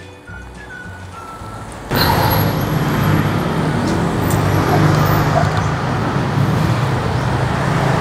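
Faint background music, then about two seconds in a loud, steady rushing noise sets in: the flame of a portable butane gas stove under a small pot of water just coming to the boil, heard close up.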